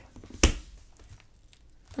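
A single sharp tap about half a second in, from handling a stack of clear plastic sticker sleeves, followed by faint rustle.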